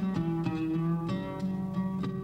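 Background music: a plucked string instrument playing a melody of separate notes, settling on a held low note in the second half.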